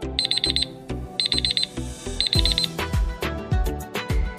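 Electronic alarm-clock beeping in three quick bursts of about four high beeps each, a second apart, signalling that the puzzle's countdown has run out, over background music with a steady beat.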